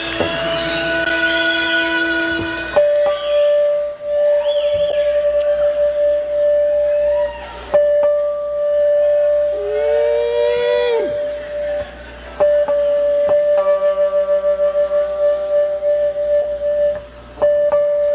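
Musicians tuning up on stage: one instrument note is held and repeated at the same pitch, wavering several times a second, with a few sliding notes and other held tones in between.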